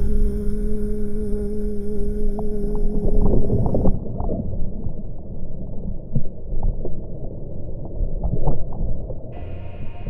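Water rushing and spray breaking over the hull of a racing multihull at speed, with a steady hum in the first few seconds. About four seconds in, the sound turns muffled and low, as heard with the camera under the water, with scattered splashes.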